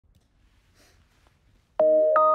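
Near silence, then shortly before the end a logo intro jingle starts abruptly with a bright struck note that rings on at several steady pitches.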